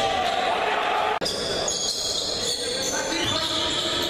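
Live game sound of indoor basketball play in a large gym, with the ball and players on the court and voices carrying through the hall. The sound cuts out for an instant a little over a second in.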